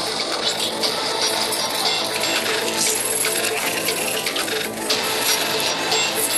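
Cinematic intro music layered with dense metallic clinking and ticking effects.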